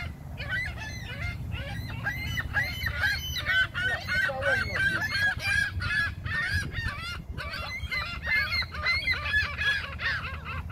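A flock of gulls calling: many short, overlapping cries repeated rapidly, with a brief lull a little past the middle.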